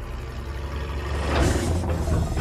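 Heavy truck engine rumbling low, with a surge of noise and a hiss that peaks about one and a half seconds in.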